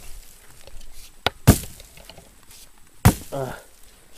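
Axe chopping wood: two sharp strikes of the blade into the wood, about a second and a half apart.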